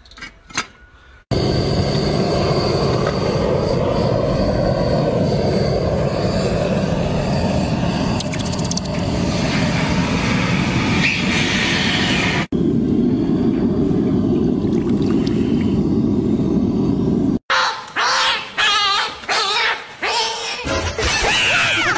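Gas-fired burner on a homemade metal furnace running: a loud, steady rushing noise that starts abruptly about a second in and shifts to a deeper sound at a cut about twelve seconds in. Near the end it gives way to a few scattered knocks.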